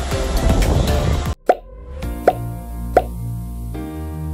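Loud rushing noise from sliding fast down a snow slide, mixed with music, cuts off abruptly about a second in. Then come three short pop sound effects, roughly 0.7 s apart, over soft synth-keyboard intro music.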